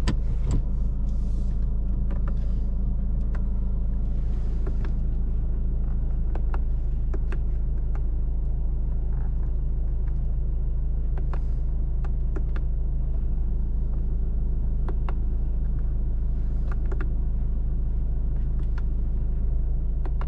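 Cabin sound of a Ford Ranger 2.2 four-cylinder turbodiesel pickup driving on a rough dirt road: a steady low rumble from engine and tyres, with many short sharp knocks and rattles from the cabin as it goes over the ruts.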